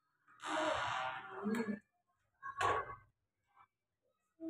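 A person's breathy voice: a long sigh-like exhale lasting over a second, then a short vocal sound about two and a half seconds in.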